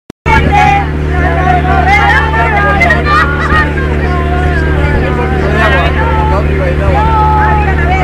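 An engine running with a steady low hum, under several people's overlapping voices.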